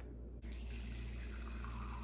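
Water running from a kitchen faucet into a glass measuring cup, a steady hiss that starts about half a second in.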